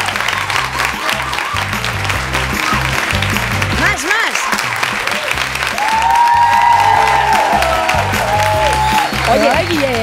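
Studio audience applauding over background music with a steady bass beat, with drawn-out shouts from the hosts in the middle.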